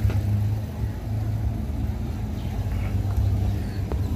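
A motor vehicle's engine running with a steady low hum, over faint street noise.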